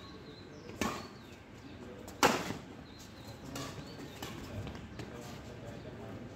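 Badminton rackets striking a shuttlecock during a rally: two sharp hits about a second and a half apart, the second louder, followed by several fainter knocks.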